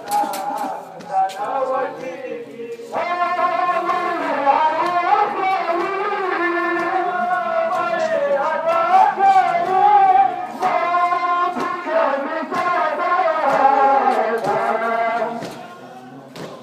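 Men's voices chanting a Muharram mourning lament (nauha) in long, wavering held notes, with a short break about three seconds in before the next phrase. Occasional sharp slaps cut through the chant.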